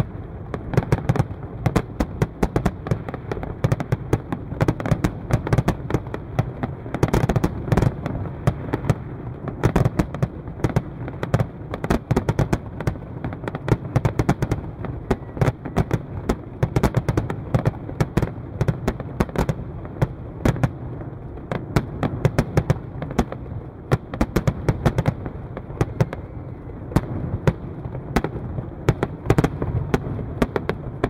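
Fireworks display: aerial shells bursting in a dense, unbroken barrage of sharp bangs and pops, several a second, over a continuous low rumble.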